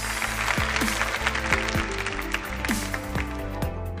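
Studio audience applauding over an entrance music cue with deep steady bass and repeated falling low synth tones; the applause fades out about two-thirds of the way through while the music carries on.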